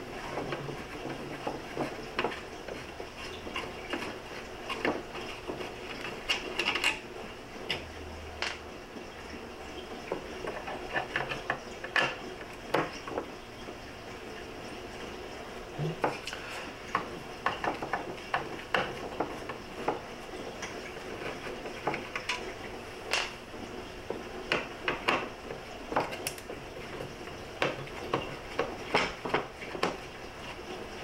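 Phillips screwdriver working the small screws out of a 1967 Mustang's metal instrument cluster and bezel, with irregular sharp metallic clicks and clinks as the screws, tool and cluster are handled on a tabletop.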